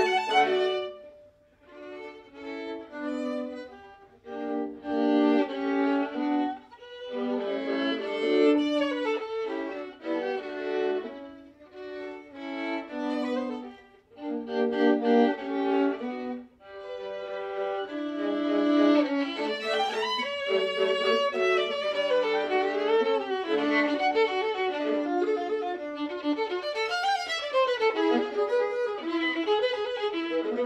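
A violin and a viola played together as a classical duo with the bow. For the first half the music comes in short phrases with brief breaks between them; from about halfway it runs on without a break in a busier passage.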